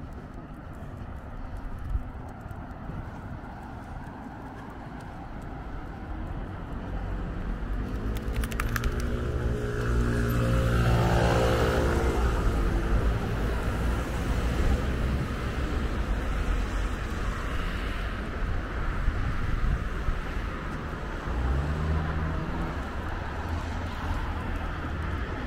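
Road traffic: a vehicle's engine approaches, passes close about halfway through and fades, over a steady hum of other traffic, with another engine starting up near the end.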